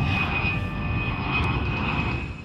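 Jet airliner engine sound effect: a steady low rush with a high whine over it.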